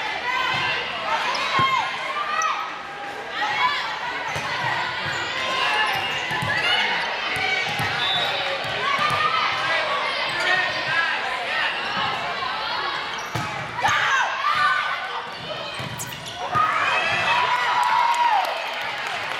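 Indoor volleyball rally in a large gym: the ball being struck several times in sharp hits, athletic shoes squeaking on the hardwood court, and players and spectators calling out, all with the echo of the hall.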